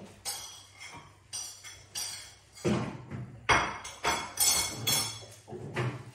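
Kitchen crockery and utensils being handled: a run of separate clinks and knocks, about a dozen in six seconds, some bright and ringing, a few duller thuds.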